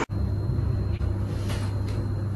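A steady low hum with a thin high whine above it, and a couple of faint ticks about a second and a half in.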